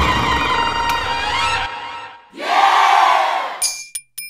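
Comedy-show soundtrack effects: a low boom under a held chord that fades out about two seconds in, then a short swelling shout of many voices, and quick tinkling chimes starting near the end.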